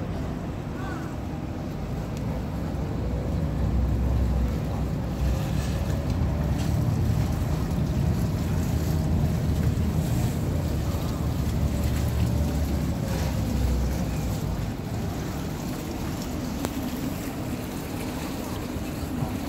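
Passenger ferry's engine and propellers working under load as the boat berths alongside a pontoon, churning the water, with wind buffeting the microphone. The low rumble swells from about four seconds in and eases after about fourteen seconds, while a faint engine tone slides up and back down.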